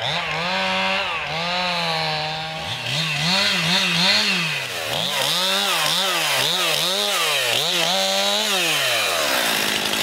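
Stihl two-stroke chainsaw running, first held at steady high revs, then its engine speed rising and falling again and again before dropping back near the end.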